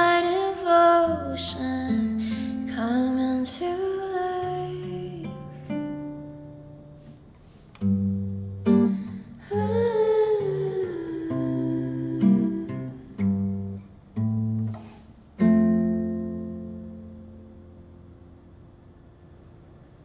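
A voice sings the song's closing phrases over a nylon-string classical guitar. The guitar then plays a few separate, slowly spaced chords, with a little more singing between them. A final chord rings out and fades away, ending the song.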